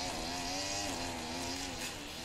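Gas-powered lawn mower engine running steadily, its pitch wavering slightly and dipping about a second in.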